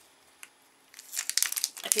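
Paper packaging crinkling as it is handled: nearly quiet at first with a single faint tick, then a quick run of crinkles and crackles about a second in.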